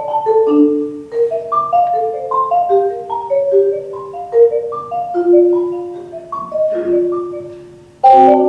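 Solo marimba played with mallets: a flowing melody of single ringing notes, a few a second, that grows softer and fades away over the last couple of seconds.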